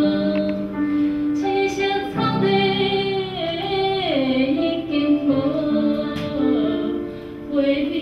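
A solo singer singing a song with musical accompaniment, holding long notes with a slow slide in pitch midway, and a brief drop in loudness near the end.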